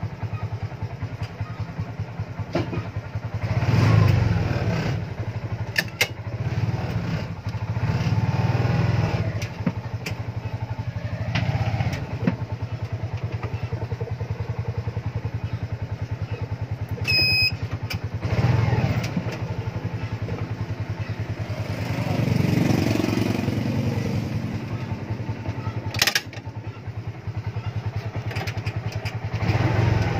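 TVS King auto-rickshaw engine idling with a fast, even low pulse, rising in several swells as it is revved briefly. A short high electronic beep comes about two-thirds of the way through, and a sharp click comes near the end.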